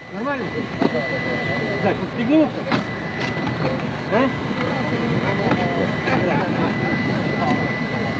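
Several people talking at once, their words indistinct, over a steady rushing noise with a thin, steady high-pitched tone.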